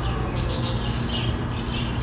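A flock of budgerigars chattering: many short, overlapping chirps and warbles.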